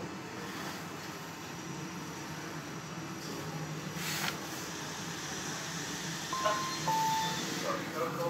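Kone EcoDisc gearless traction lift car travelling up between floors with a steady running hum and a single click about halfway. Near the end, as the car arrives, an arrival chime sounds as two short tones, the second lower.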